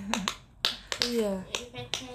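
Young women's voices talking and laughing, cut by a few sharp clicks about a second apart.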